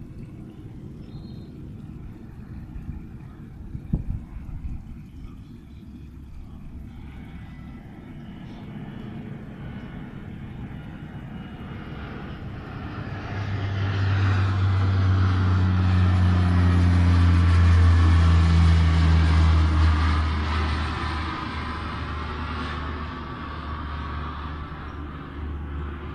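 A propeller aircraft passing over, its engine drone building slowly, loudest just past the middle and fading toward the end.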